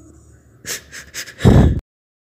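A crying woman's breaths: a few short, sharp sniffling gasps, then a loud low thump, and the sound cuts off suddenly.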